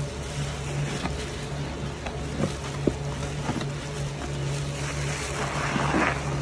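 Soap-soaked sponges being squeezed in thick pink Pine-Sol foam: wet squelching with scattered crackles and pops. A steady low hum runs underneath.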